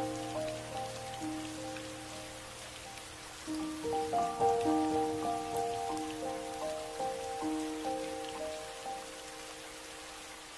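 Steady rain with soft, slow music of long held notes over it. The melody thins out a few seconds in, comes back about halfway, and fades away near the end.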